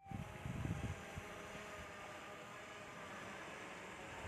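Steady whirring hum of a small quadcopter drone in flight, with wind rumbling on the microphone, gustier in the first second.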